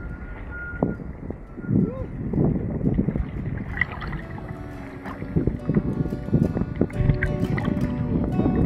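Wind and water rushing over an action camera riding just above the sea, in irregular low gusts and splashes. Background music with held notes comes in about halfway through.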